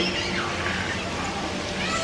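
Steady outdoor background noise with a low hum, and a faint high call rising and falling in the first second.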